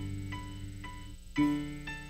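Grand piano played solo: light treble notes about twice a second over sustained low bass chords, with a new chord struck about one and a half seconds in.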